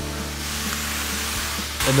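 Ground bison and diced onions sizzling steadily in a hot cast iron pot, with background music held underneath.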